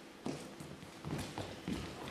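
Footsteps on a stage floor: several quiet, separate steps as actors walk across the stage.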